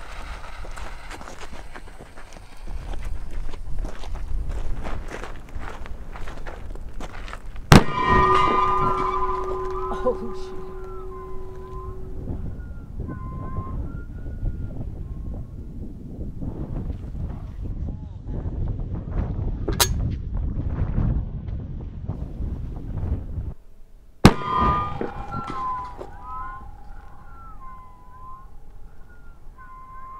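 Black-powder bowling-ball cannon, loaded with 1.7 ounces of black powder, firing with a loud boom about eight seconds in and again about twenty-four seconds in, after several seconds of wind noise.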